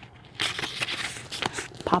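A paper page being turned: a rustle with several crisp crackles, starting about half a second in and lasting over a second.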